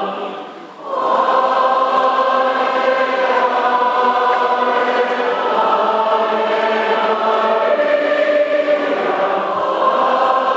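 Choir singing slow, sustained notes in a church setting, with a brief pause just under a second in before the voices come back in.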